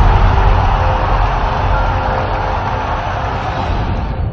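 Intro sound design for an animated channel logo: a loud, dense rushing rumble with deep bass under faint music, slowly getting quieter.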